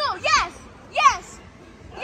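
Children's short, high-pitched shouts, repeated about once a second, each rising and then falling in pitch, over a background of children playing.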